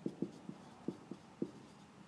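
Whiteboard marker writing on a whiteboard: a faint string of short, irregular squeaks as the letters are drawn.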